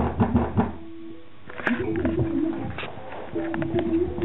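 Music with a swooping, pitch-bending synth line played through a scooter's sound system with a GAS 8-inch subwoofer and GAS amplifier, with frequent sharp knocks and a short lull about a second in.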